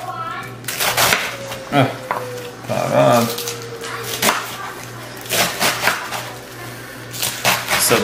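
A large kitchen knife slicing through a head of green cabbage and striking a wooden cutting board, in sharp, irregular knocks about once a second, with low voices in between.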